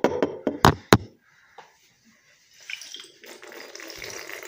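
A few sharp knocks in the first second as a glass bottle of water is handled, then from about three seconds in, a steady rush of water pouring out of the upturned glass bottle in a swirling vortex into a mouth.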